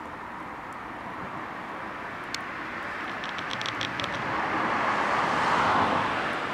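Road traffic: a passing vehicle's noise swells steadily and is loudest near the end. A short run of high ticks comes a little past halfway.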